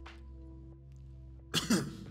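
Quiet background music with sustained notes, and about one and a half seconds in a man clears his throat once with a short, harsh cough.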